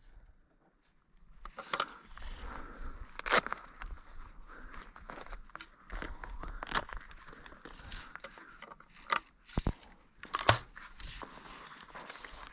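Footsteps crunching through dry grass and brittle brush, with irregular crackling and rustling and a few louder knocks; the sound starts about a second in after a brief silence.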